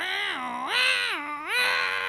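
A man's voice imitating a dial-up modem connecting: a high, warbling tone that slides up and down about three times.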